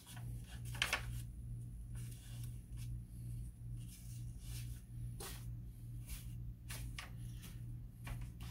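A steady low electrical hum that pulses about three times a second, with a few faint brushes and ticks from paper being handled.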